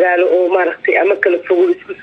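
Only speech: a woman talking in Somali, without a break.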